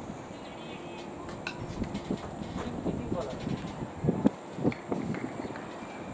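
Open-air ambience on a cricket field: faint, scattered voices of players calling out, with a few short knocks, strongest about four to five seconds in, over a steady high hiss.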